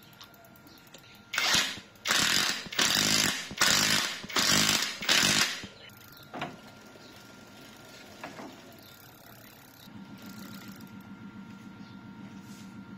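Five short bursts of pressurised spray hissing, each about half a second long, in quick succession starting about a second and a half in and ending before six seconds.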